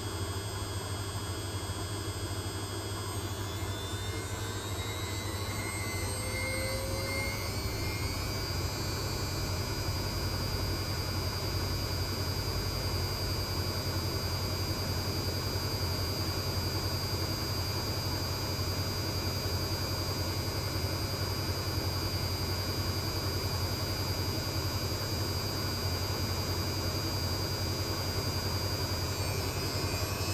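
Zanussi washing machine's drum motor speeding up into a spin: a whine rising in pitch over the first several seconds, then holding at a steady high whine over a constant low hum.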